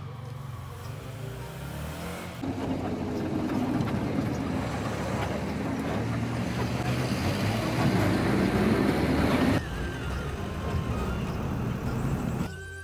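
Bus engine running and road noise heard from inside the moving bus, a steady drone that gets louder about two seconds in and drops back near ten seconds.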